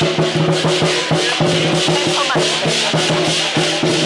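Lion-dance percussion played fast and loud: a Chinese drum beating with cymbals clashing continuously over it and a gong ringing.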